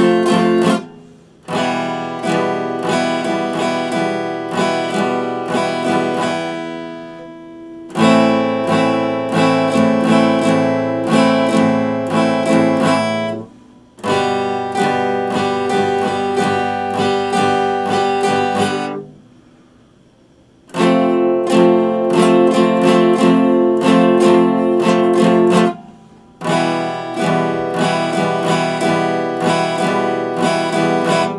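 Epiphone steel-string acoustic guitar strummed in chord phrases of about five to six seconds. Each phrase breaks off with a brief gap before it starts again, and the longest pause comes about two-thirds of the way through.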